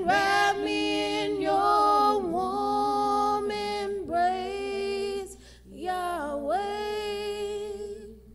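Two women singing a slow gospel song unaccompanied, in long held notes with short breaths between phrases; the singing fades out at the end.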